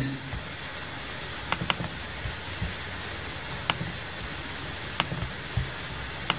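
A few sharp computer mouse clicks, a quick pair about one and a half seconds in and single ones later, over steady room hiss and hum from an open microphone.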